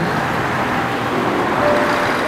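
Steady road traffic noise from passing cars, swelling slightly partway through.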